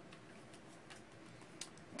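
Near silence with a few faint, irregular clicks as a tarot card is drawn from the deck and lifted; the clearest click comes about one and a half seconds in.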